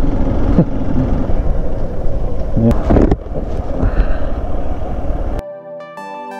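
Hero Xpulse 200 motorcycle riding slowly, mostly wind rumbling on the helmet-mounted microphone over the engine, with a short laugh about three seconds in. Near the end it cuts off suddenly and soft keyboard music begins.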